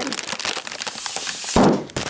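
Plastic flameless ration heater pouches crinkling as they are handled, a dense run of fine crackles, then a louder, fuller burst of rustling about one and a half seconds in.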